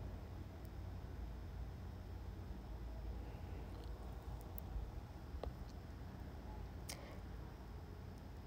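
Faint room tone: a low steady hum with a couple of soft clicks in the second half.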